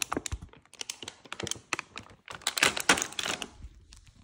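Groceries being handled in a plastic shopping bag: irregular rustling and crinkling of plastic packaging and bag with many light clicks and knocks. It is busiest between about two and a half and three and a half seconds in, then dies away at the end.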